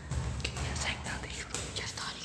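Faint, quiet voices talking in low tones, some of it whispered, over a low rumble.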